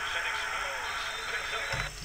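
Football game broadcast audio playing at low level: steady stadium crowd noise.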